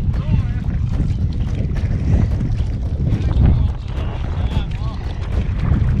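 Wind buffeting the microphone in an uneven low rumble, with faint voices under it.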